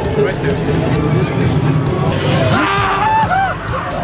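Haunted-maze soundtrack: loud, low rumbling music and effects. Voices and laughter come in over it after about two seconds.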